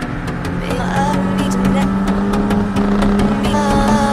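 Kawasaki inline-four sport motorcycle engine running at steady high revs while riding, its note creeping slowly higher.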